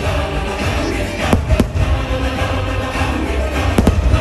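Fireworks show music playing while aerial fireworks burst overhead. There are sharp bangs in two pairs: one pair a little over a second in, and one pair close together just before the end.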